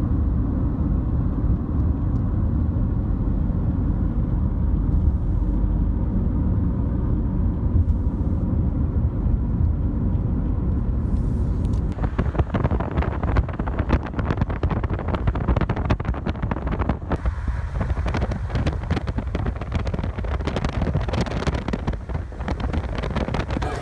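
Car driving at highway speed, heard from inside: a steady low road rumble. About halfway through, a louder, gusty rushing hiss of wind noise joins in.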